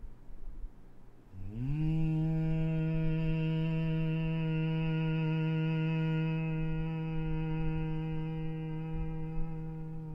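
A man's voice humming one long, steady note for a meditative breathing practice. The hum begins about a second and a half in with a brief upward slide in pitch, then holds level.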